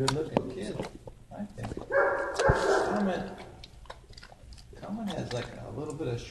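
Dogs barking in an animal shelter's kennels, with one loud, drawn-out bark about two seconds in lasting about a second.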